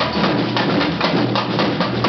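Percussion band playing a fast, steady groove on large drums and hand percussion, the drum strokes coming thick and even.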